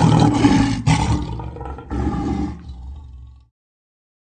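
Lion roar sound effect: a series of rough, drawn-out roars that surge about a second and two seconds in, fade, and stop abruptly about three and a half seconds in.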